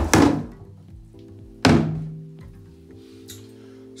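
Two sharp thunks about a second and a half apart as a blue plastic water filter housing is knocked against and set down in a bathtub. Background guitar music comes in about a second in.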